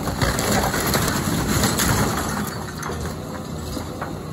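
Timber framing and siding of a wooden house wall splintering and crashing down as an excavator bucket pulls it in. A dense crackle of breaking wood and falling debris lasts about two seconds, then dies away. Under it, the Caterpillar excavator's diesel engine runs steadily.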